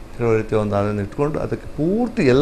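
Only speech: a man talking, with a brief pause at the start.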